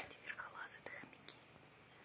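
A person whispering briefly and softly, with a few light clicks, all in the first second or so.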